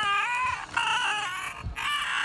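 High-pitched, wavering whining calls from a voice, three in quick succession, each under a second long.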